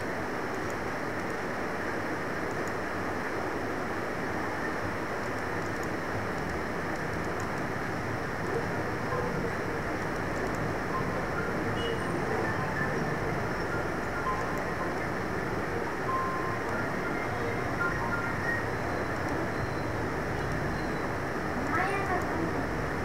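Steady background noise, a broad even rush with a few faint brief tones over it in the second half.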